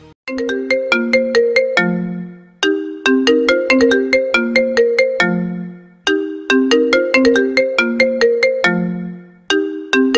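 Mobile phone ringing with a melodic ringtone: a short tune of clear notes repeated about every three seconds, four times over.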